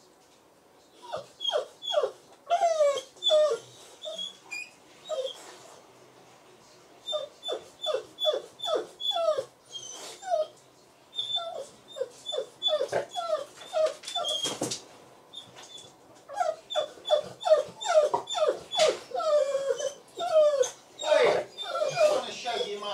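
Dog whining in short, falling yelps, several a second, with a couple of brief pauses.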